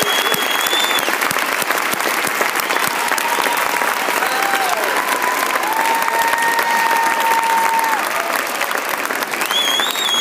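Audience applauding steadily, a dense patter of clapping hands, with a few drawn-out high calls held over the clapping.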